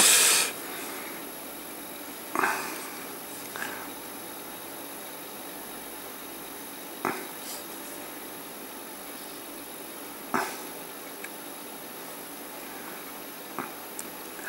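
Faint steady hiss with a few brief soft knocks and rustles, spaced a few seconds apart, from hands handling a painted miniature and a fine paintbrush.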